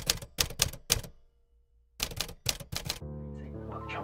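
Typewriter keystroke sound effect: two quick runs of four sharp clacks, about a second apart. Then a steady hum with held tones begins about three seconds in.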